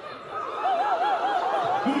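A person laughing in a high voice, the pitch wobbling up and down several times in a quick run of laughs. A man's voice starts speaking right at the end.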